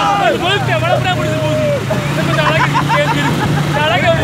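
A group of men laughing and shouting together, with the steady low hum of a motor rickshaw's engine underneath.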